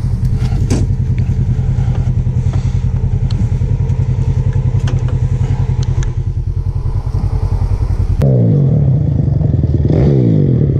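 Side-by-side UTV engine running at low revs with a steady, pulsing throb, with a few sharp clicks of rock and gravel. About eight seconds in, the sound cuts to a dirt bike engine revving up and down as the bike rides the trail.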